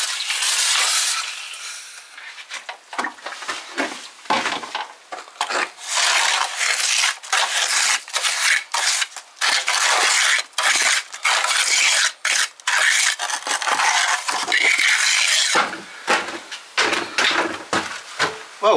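A steel trowel scraping mortar and pressing it into the joints of a rubble stone wall: a long run of short, irregular scrapes. It opens with about a second of hissing from a hand spray bottle wetting the wall.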